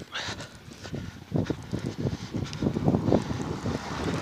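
Footsteps in snow, a quick run of about four steps a second, with wind rushing on the phone's microphone.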